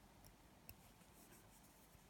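Near silence, with a few faint small clicks and light scratching from metal tweezers working at the skin of a finger, the sharpest click about two-thirds of a second in.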